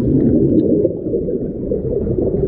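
Muffled underwater churning and bubbling heard by a submerged camera: a dense cloud of air bubbles swirling around a swimmer who has just plunged into a pool, a steady low rumble with no high sounds.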